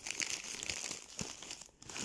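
Packs of window mosquito nets being handled, their glossy packaging crinkling and rustling, with small clicks, dying away near the end.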